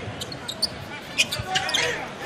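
Basketball being dribbled on a hardwood court, a series of separate bounces, over the steady noise of an arena crowd.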